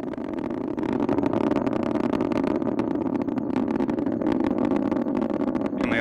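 Delta IV Heavy rocket's three RS-68A engines heard in flight: a steady rumbling roar with a crackle, growing a little louder about a second in.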